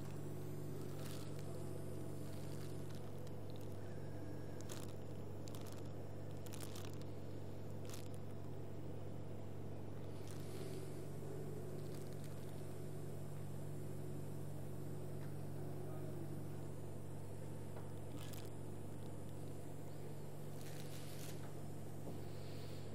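A steady low electrical or machine hum, with a few faint clicks and scrapes scattered through it.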